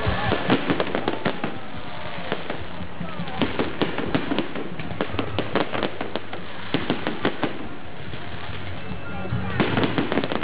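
Fireworks display: many sharp crackles and pops from bursting shells. They come in bunches: in the first second and a half, again from about three to seven and a half seconds, and near the end.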